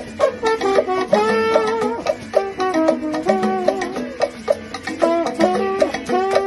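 Live Latin band playing an instrumental passage: a trombone carries the melody in held, stepping notes over maracas and hand percussion keeping a steady rhythm.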